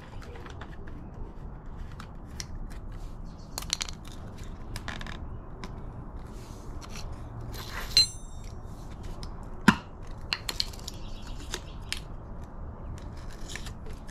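A plastic quart bottle of gear oil being opened by hand: scattered clicks and crinkling from the screw cap and seal, a louder crinkle about 8 s in and a sharp click just before 10 s.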